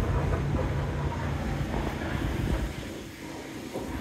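Wind rumbling on the microphone outdoors, a low, even rumble that eases off after about three seconds.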